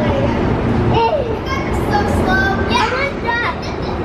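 Young children calling out and squealing in high voices, over a steady low rumble.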